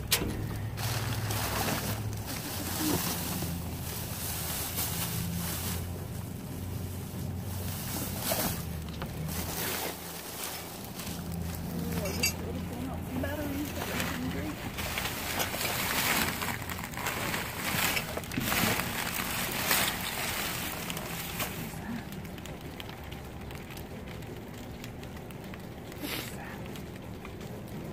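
Plastic bags, plastic film and cardboard rustling and crinkling in irregular bursts as someone rummages through a dumpster. A steady low hum runs underneath for much of the first half.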